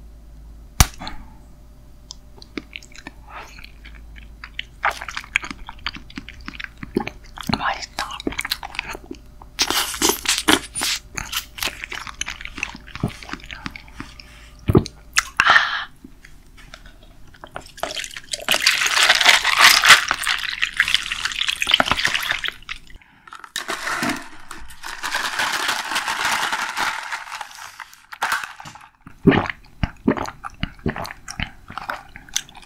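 Close-miked eating sounds: crunching and chewing with many short clicks, then two longer noisy stretches of a few seconds each in the second half.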